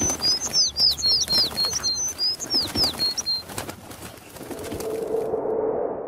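Cartoon bird tweeting sound effect from an animated outro: a quick run of short high chirps mixed with light clicks, ending about three and a half seconds in. It is followed by a low swelling sound that grows louder and cuts off at the end.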